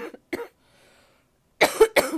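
A woman coughing twice in quick succession near the end, loud and sudden.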